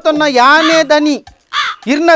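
A man speaking loudly in a raised, strained voice, with a brief pause about two-thirds of the way through.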